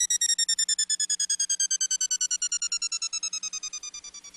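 Electronic music: a fast-stuttering synth tone gliding slowly down in pitch and fading out.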